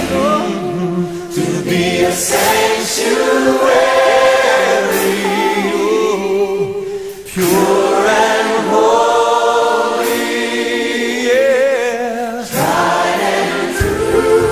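Recorded choir singing a gospel song in harmony, without instrumental accompaniment; the sung phrases break off briefly a few times.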